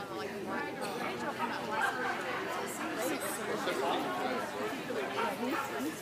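Indistinct background chatter of several people talking at once, no single voice standing out.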